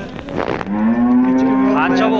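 A bull mooing: one long, loud, steady call that begins a little under a second in.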